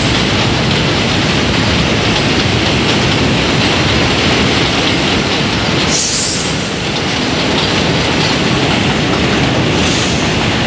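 R68A subway train running along an elevated track, a loud steady rumble of wheels on rail. A brief high-pitched hiss comes about six seconds in.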